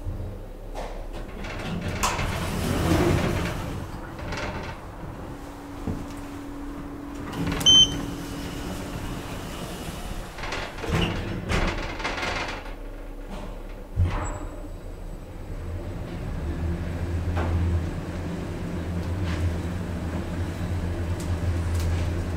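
Schindler 3300 machine-room-less traction elevator: sliding-door noise and a short high beep, then a click about two-thirds of the way in and a steady low hum as the car travels up.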